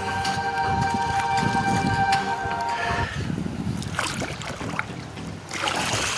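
Water sloshing and splashing in shallow, muddy floodwater, with a held musical chord over it that stops suddenly about halfway through.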